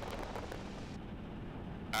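Piper J-3 Cub in flight: the engine and the airflow over the airframe make a steady drone. About halfway through the sound loses its upper hiss and turns duller.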